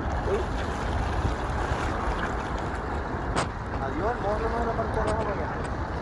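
Steady rushing noise of wind and passing traffic on the microphone. A person's voice calls out briefly about four seconds in, and there is a single sharp click a little before that.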